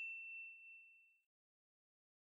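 The ringing tail of a single bright ding, a bell-like sound effect on an animated intro banner, fading away about a second in, then silence.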